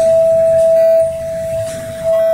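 Small 5.3-inch speaker driver playing a steady sine test tone at a single mid pitch, its loudness dropping about halfway through.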